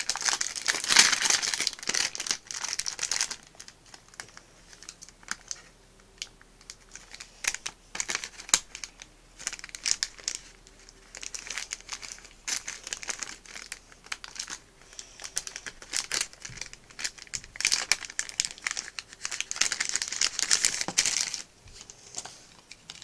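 Plastic blind-bag packet being handled, torn open and crinkled by hand: a burst of crinkling at the start, scattered small rustles and clicks through the middle, then another long spell of crinkling near the end.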